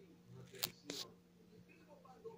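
Two sharp clicks about a third of a second apart, a little past a quarter of the way in, the second slightly longer.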